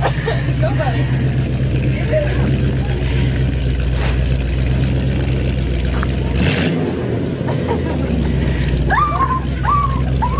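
An old car's engine running steadily at idle, with voices calling in the background.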